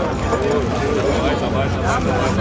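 Voices talking in the crowd; no distinct mechanical sound stands out.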